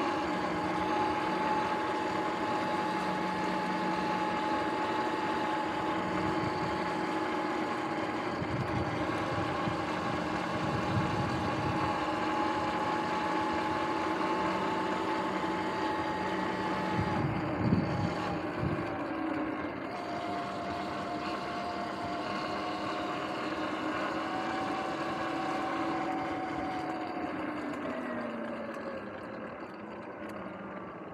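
Sur-Ron electric dirt bike's motor and drivetrain whining steadily while cruising, over wind and tyre noise. The whine drops in pitch a little past the middle, and glides down again near the end as the bike slows. A short knock sounds a little over halfway through.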